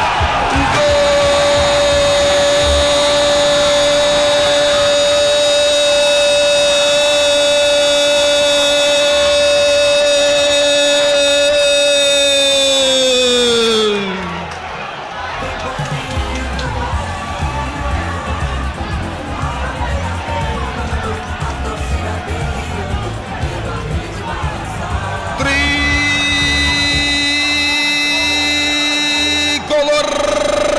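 A football narrator's drawn-out goal cry, held on one pitch for about twelve seconds and sliding down as it ends. Stadium crowd noise and cheering follow, then a second, shorter held shout near the end.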